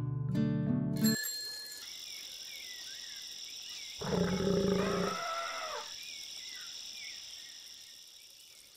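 Outro sound effects: plucked acoustic guitar music stops about a second in, and a short bell ding follows. Then comes a steady high insect chirring, with an animal roar lasting about a second midway, and the whole fades out toward the end.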